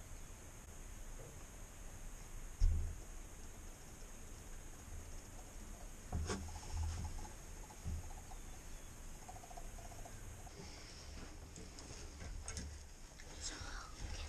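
Hushed whispering in a small enclosed hunting blind, with a few soft, low thumps of movement, the loudest about three seconds in.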